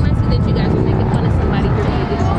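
People talking, with music in the background, over a steady low rumble.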